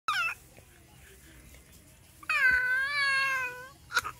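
Four-month-old baby vocalizing: a brief high squeak at the start, then about two seconds in one long drawn-out note, held fairly steady and falling slightly at the end.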